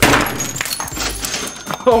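Jumbo metal lighter slammed onto a wax brain candle: a loud smash right at the start, then a second or so of crumbling and scattering wax bits.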